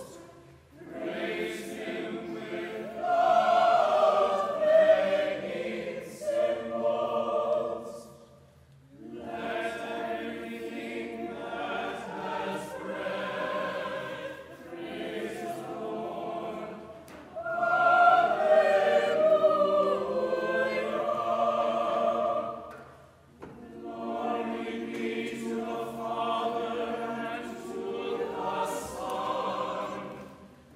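Church choir singing in long phrases, with brief breaks between phrases about a third and three quarters of the way through.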